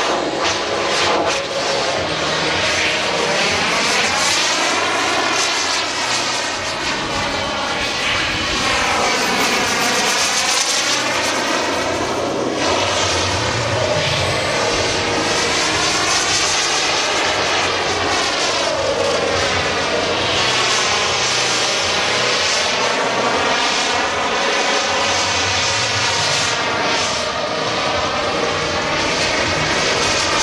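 Model jet's P220 turbine engine running steadily under power, a loud continuous jet rush with a faint high whine, its sound sweeping and swirling up and down in pitch as the jet passes back and forth overhead.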